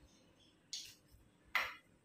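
Two short, soft handling sounds of kitchen utensils about a second apart, the second louder, with quiet between them.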